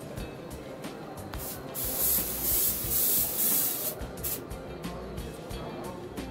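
Aerosol can of test smoke sprayed in one hiss of about two and a half seconds, starting about a second and a half in, followed by a brief second spurt; the spray is aimed at a smoke detector to trip its alarm.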